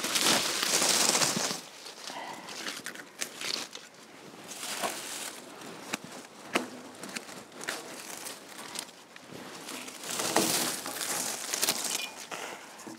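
Dry clematis leaves and canes rustling and crackling as they are pulled out of the tangle by gloved hands, loudest in the first second and a half and again near the end, with a few sharp clicks of hand pruners snipping canes in between.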